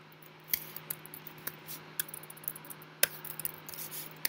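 Computer keyboard keys clicking in scattered, irregular keystrokes as a line of code is typed, over a faint steady hum.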